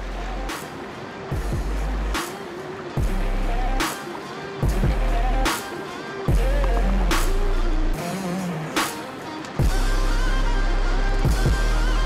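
Background music with a steady beat: a drum hit a little under once a second over a bass line and a melody.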